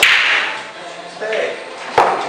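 Pool balls struck hard: one sharp crack at the start, with a rattling tail that fades over about half a second, and another sharp click at the very end.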